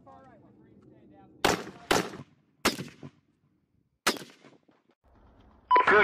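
Four single rifle shots, each with a short echoing tail. The first two come about half a second apart, the third just under a second later, and the fourth about a second and a half after that.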